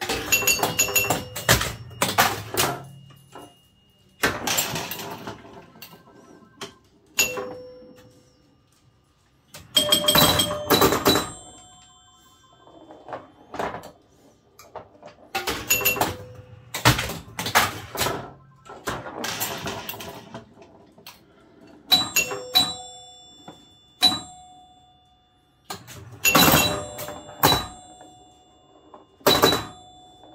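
Bally electromechanical pinball machine in play: bursts of sharp mechanical clacks from flippers, bumpers and score reels, with bell chimes ringing out as points score. The bursts come every two to three seconds, with short quieter gaps between.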